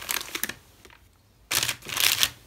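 A paper bag of art supplies rustling and crinkling as it is picked up and handled. It comes in two bursts, a short one at the start and a louder one near the end.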